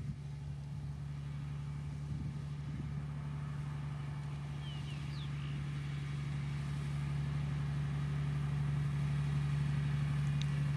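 Heavy water tanker truck's engine running with a steady low drone, slowly growing louder as the truck approaches.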